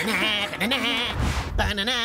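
A cartoon character crying in a wavering, bleat-like wail over background music, with a short low rumble and hiss at about 1.2–1.5 s.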